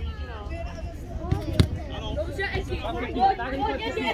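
Mixed voices of people chattering and calling out across a football pitch, with one sharp knock about a second and a half in, over a steady low rumble.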